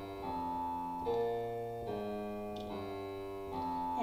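Digital piano playing a held F–B-flat–D chord in the right hand over single bass notes in the left, the notes changing about once a second.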